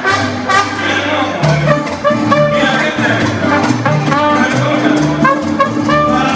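Live mariachi band playing: trumpet and violins carry the melody over a stepping bass line and a steady strummed rhythm.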